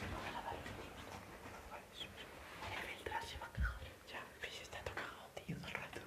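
Faint, indistinct voices mixed with rustling and handling noise on the microphone, with a dull thump a little past halfway.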